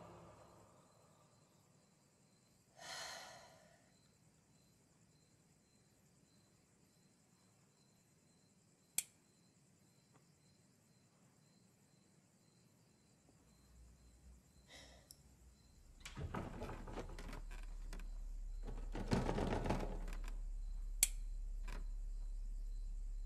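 Horror-film sound design: near silence broken by a short breathy noise and a single sharp click. In the last few seconds a low drone comes in under a run of rustling, scraping noises, ending with another sharp tick.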